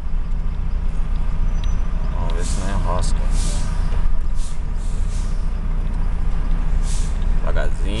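Heavy vehicle's engine running with a steady low drone, heard from inside the cab as it creeps slowly down a ramp onto a river ferry, with several short hisses through it.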